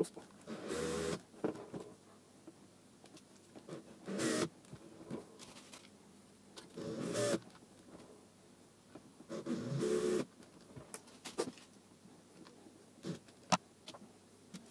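Cordless drill motor run in four short bursts, spinning a clamped nail to wind wire into tight spiral coils, one burst per coil. A few sharp clicks follow near the end.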